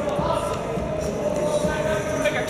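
Music playing, with a held note and a shifting melody line, and light footsteps on a hardwood gym floor.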